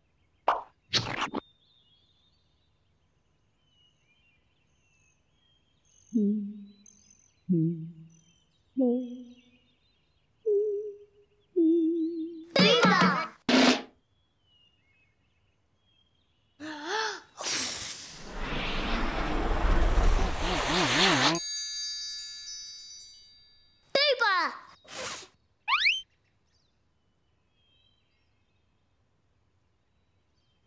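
Cartoon-style comic sound effects. About six seconds in come five short springy boings, each falling in pitch and each starting higher than the last. Quick sweeping glides come before and after them, and a long noisy hissing, rumbling stretch of about four seconds falls past the middle.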